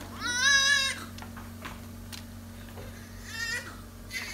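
Newborn baby crying: one loud wail of about a second near the start that rises in pitch and then holds, and a shorter, quieter cry about three seconds in.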